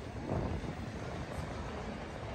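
Street background noise: a steady low rumble of city traffic, with a slight swell about a third of a second in.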